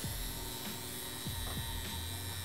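Two wireless, battery-powered FK Irons Exo rotary tattoo machines running together on skin, a steady whirring hum.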